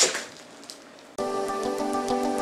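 A last stroke of a hand hacksaw cutting through pork shoulder bone, then a short lull, then background music with held notes starts suddenly a little over a second in.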